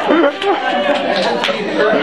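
Several people's voices talking over one another in a jumble of chatter.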